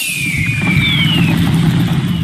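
Online slot game's win sound effect: a dense, crackly low rumble with two short falling whistles in the first second or so.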